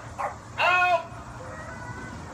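A black shepherd protection dog barking: a short bark, then a louder, longer one about half a second in.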